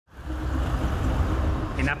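Street traffic noise: a steady low engine rumble from passing vehicles, with a man's voice starting right at the end.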